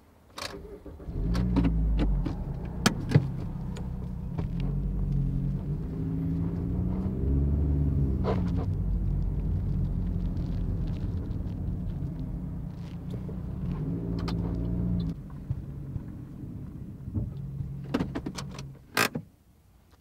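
Car engine heard while driving, a steady low hum whose pitch rises and falls a few times with speed. It dies down in the last few seconds, with a few sharp clicks, the loudest near the end.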